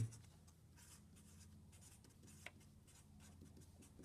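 Faint scratchy strokes of a felt-tip pen writing letters on paper.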